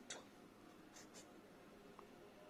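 Faint scratching of a pen making a tick mark on a printed book page, two short strokes about a second in.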